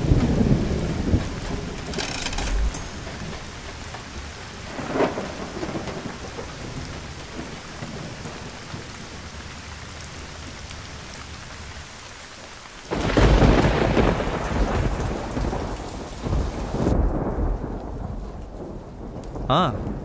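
Heavy rain falling steadily, with thunder: a rumble at the start, smaller rolls about two and five seconds in, and a loud thunderclap about thirteen seconds in that rumbles on for several seconds. Near the end the rain turns muffled.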